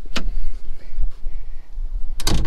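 Cab door of a Kubota KX040-4 mini excavator being handled as it is opened, with one sharp latch click just after the start, over a steady low rumble of wind on the microphone.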